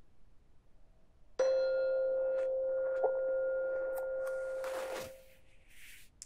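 Phone timer alarm playing a singing-bowl-like chime: one clear ringing tone begins about a second and a half in, is struck again softly about three seconds in, and rings steadily until it cuts off about five seconds in. It signals the end of the timed pose.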